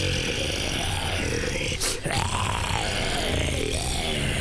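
Cartoon soundtrack: a wavering tone that rises and falls about once a second over steady background music, with a single sharp hit a little before two seconds in.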